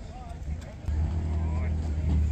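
A car engine running steadily at a low idle, cutting in abruptly about a second in, over background crowd chatter.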